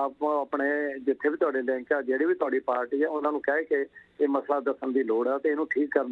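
A man speaking over a telephone line, his voice thin and narrow as phone audio is, talking almost without a break apart from a short pause near the middle.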